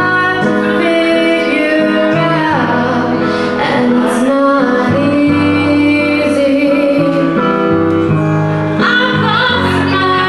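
A woman singing a pop song live into a microphone, accompanying herself on piano.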